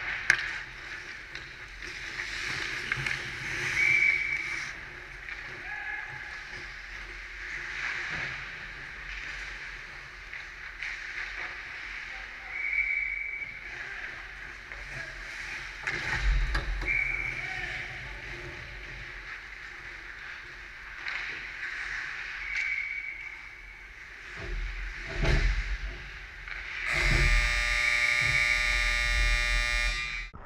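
Sounds of an ice hockey game picked up from behind the net: skate blades scraping, sticks and puck clacking, scattered shouts, and a few heavier knocks. Near the end a steady, buzzing tone with many overtones sounds for about three seconds and cuts off sharply.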